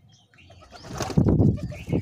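A rock pigeon cooing, loud and low, starting about a second in, with the flutter of a bird's wings as it takes off.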